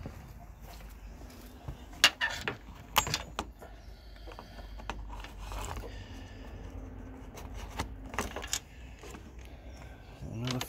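Sharp metallic clicks and clacks of hands handling parts in a car's engine bay: a cluster about two to three seconds in, and another near eight seconds.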